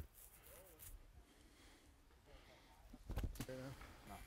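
Quiet outdoor ambience with faint bird chirps. About three seconds in comes a brief knock and a short exclamation.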